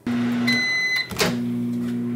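Microwave oven running a 30-second heating cycle, a steady low hum, with a single keypad beep about half a second in and a click just after it.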